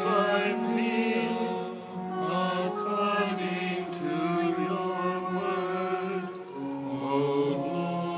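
A small choir singing a slow, chant-like sacred piece in long held notes, in a large cathedral.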